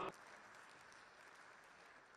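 Faint, steady applause in a large chamber: an even wash of distant clapping after a speech ends.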